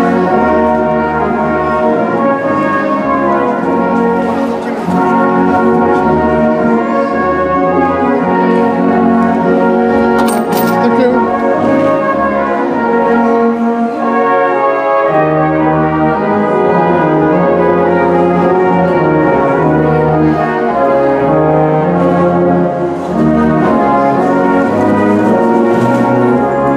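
Brass band playing: cornets, tenor horns and tubas sound sustained chords over a moving bass line. A short click cuts through about ten seconds in.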